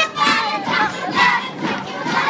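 A crowd of children shouting together, many voices at once, over dance music.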